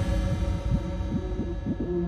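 Dark techno/EBM track in a stripped-down passage: short repeated synth bass notes, about five a second, over a held low tone.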